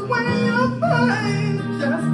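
Live music: two guitars playing together, with a voice singing a wavering, sliding melody over them.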